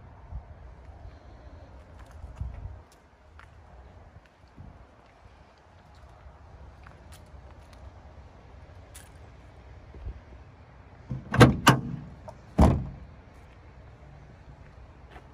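Pickup truck body latch and panel clunking: three loud, sharp knocks near the end, as from a latch releasing and a tailgate or door panel being moved.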